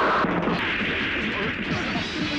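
A loud, sudden blast-like sound effect in a film soundtrack, followed by about a second of hissing noise, over background music.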